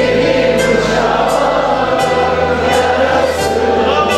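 Mixed choir singing with a Turkish folk-music ensemble of strings, woodwind and percussion, performing a Cypriot folk song (türkü), with a steady percussion beat about every two-thirds of a second.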